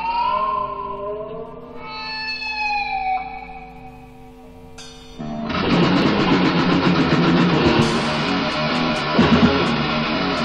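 Heavy metal band in rehearsal, captured lo-fi on a stereo tape deck through two cheap microphones in the middle of the room. An electric guitar holds sustained notes that bend in pitch, then about five seconds in the full band comes in loud, with distorted guitars and drums with regular cymbal hits.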